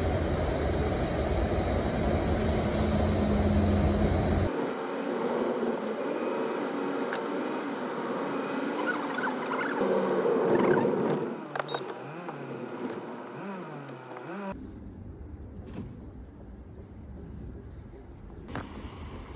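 Petrol pump dispensing fuel into a car, a steady low hum. After that comes a car driving, heard from inside the cabin, and in the last few seconds wind rumbling on the microphone.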